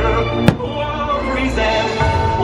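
Fireworks-show soundtrack music with a single sharp firework bang about half a second in, the loudest sound of the moment.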